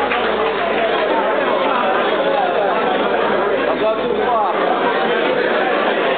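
Many people talking at once in a large hall: a steady hubbub of overlapping conversation with no single voice standing out.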